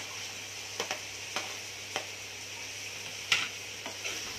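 Onion-tomato masala sizzling steadily in a frying pan as boiled potato chunks are slid in off a plastic cutting board, with a few light knocks, the loudest near the end.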